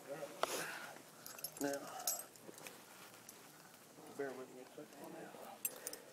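Metal carabiners and rappelling hardware on a climbing harness clinking and jangling as the climber moves on the rope, with short snatches of a voice in between.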